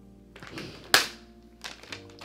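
Soft background music with held, sustained notes, and a single sharp tap about halfway through, as from a small gift box being handled.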